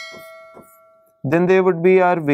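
A single bell-like chime, struck just before and ringing with several clear, steady tones that fade away over about a second.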